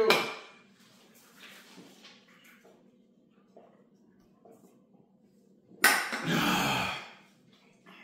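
Two men chugging cans of beer: a few seconds of faint drinking sounds, then about six seconds in a loud breathy exhale lasting about a second as they come off the cans.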